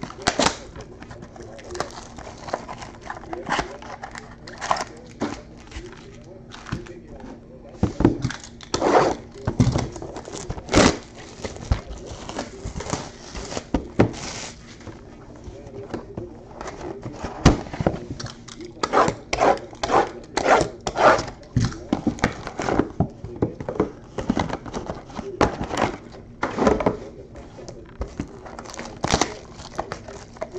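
Foil-wrapped trading card packs and their cardboard boxes being handled: irregular crinkling of foil wrappers and sharp clicks and taps as packs are pulled out of the boxes and stacked, over a steady low hum.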